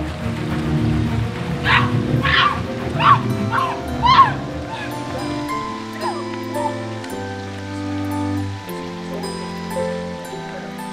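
Tense film score music, shifting to long held chords about halfway through. Near the start, five short, high cries sound over it, one about every half second.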